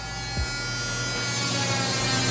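A steady motor hum with a buzzing edge, growing slowly louder.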